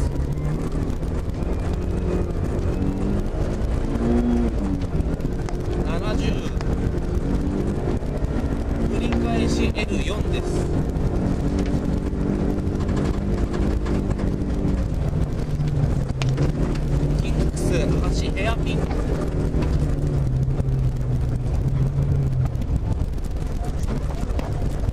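Rally car engine heard from inside the cabin, driven hard on a snowy stage: the engine note climbs and drops repeatedly with throttle and gear changes.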